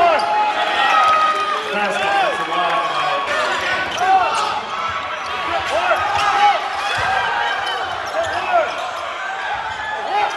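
Live college basketball play on a hardwood court: sneakers squeaking many times as players cut and jump under the basket, with the ball bouncing and thumping and players calling out.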